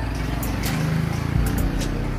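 A motor vehicle engine running steadily, with a few short sharp clicks over it.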